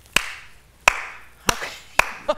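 One person's slow clap: four single hand claps, about two-thirds of a second apart.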